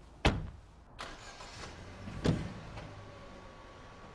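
Car doors slamming shut: two loud slams about two seconds apart, with a lighter knock about a second in.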